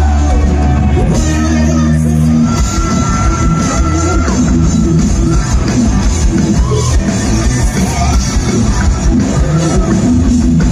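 Hard rock band playing live through a large PA in a festival tent, heard from the crowd: electric guitars, bass, drums and singing. A held low chord rings for the first couple of seconds, then the full band comes in with fast drumming.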